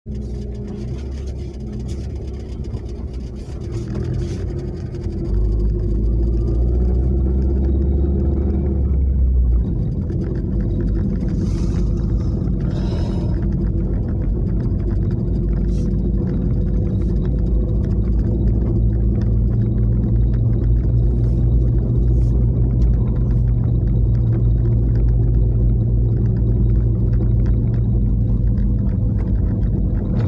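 Car engine and road noise heard from inside the cabin while driving, a steady low rumble that gets louder about five seconds in.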